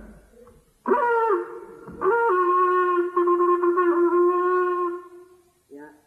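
A curved hand horn blown in two calls: a short blast about a second in, then a long held note that fades out near the end.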